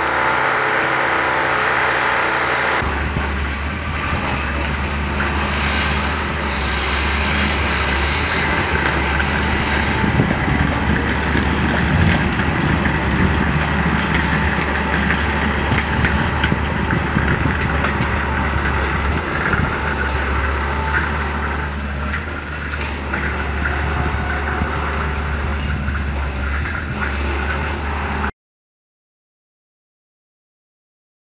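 Diesel engine of a demolition excavator running steadily under load as its hydraulic grab breaks up a concrete building, with irregular rough clatter over a strong low engine hum. The sound cuts off suddenly near the end.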